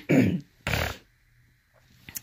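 A woman clearing her throat in two rough bursts, the second shorter and harsher just under a second in.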